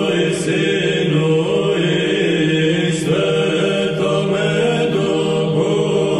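Choir chanting an Orthodox liturgical hymn in Church Slavonic over a sustained low held note.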